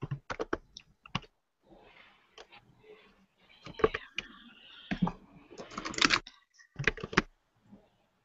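Typing on a computer keyboard: irregular runs of key clicks, thickest in the second half.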